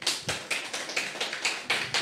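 A small audience clapping, irregular hand claps running on without a break.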